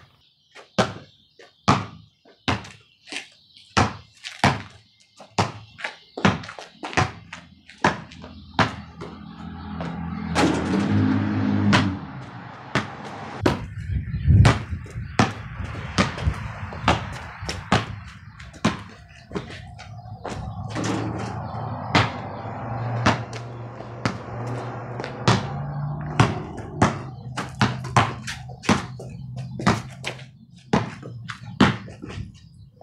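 Basketball dribbled on a concrete driveway, a steady run of bounces at about two a second, with one louder thump about fourteen seconds in. A low steady drone sits under the bounces from about ten seconds in.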